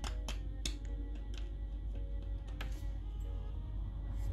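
Background music, with a handful of sharp clicks from a needle picking and scraping at hardened dalgona sugar candy in a nonstick pan, most of them in the first three seconds.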